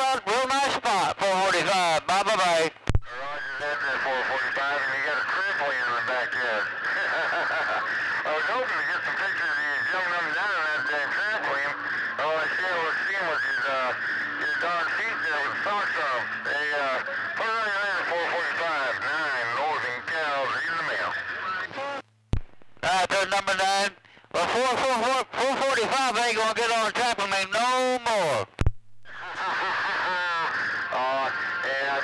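CB radio receiving distant stations: several garbled voices talking over one another through the radio's speaker, with hiss behind them. Sharp clicks come about three seconds in and twice near the end, with short breaks in the signal between them.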